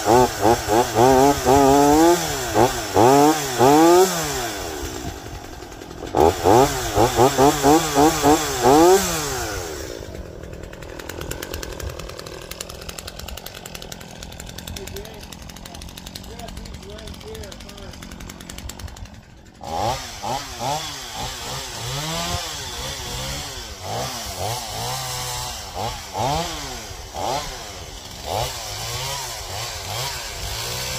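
Two-stroke gas chainsaw revved in quick repeated bursts, settling to a lower steady running for several seconds. From about twenty seconds in it revs up and down again unevenly as it cuts into a fallen limb.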